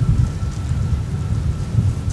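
Wind buffeting the camera microphone: an uneven low rumble that rises and falls in gusts.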